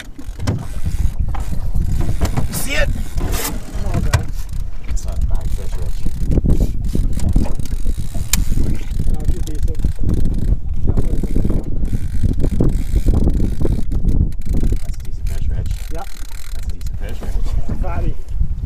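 Fishing reel being cranked with mechanical ticking as a hooked muskie is reeled in, over heavy wind rumble on the microphone.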